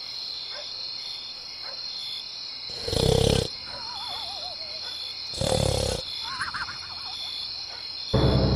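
Cartoon snoring sound effect: two loud snores about two and a half seconds apart, each followed by a wavering whistle that falls in pitch. A steady high chirring of crickets runs underneath.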